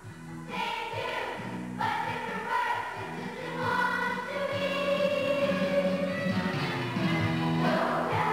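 A children's choir singing together. It comes back in about half a second after a brief break, and holds a long note through the middle.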